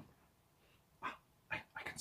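A man making a few short, faint, breathy panting sounds, like a small animal, running into the start of a whisper near the end.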